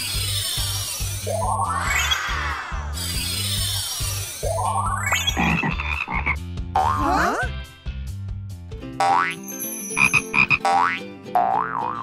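Frog croaking in short, quickly repeated pulses starts about three-quarters of the way through, after shimmering, swooping cartoon effects with a few quick rising and falling whistle-like glides over bouncy background music.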